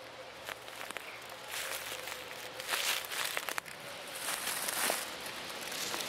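Dry leaf litter crunching and rustling under a person's feet and movements, in irregular crackles that grow louder toward the end.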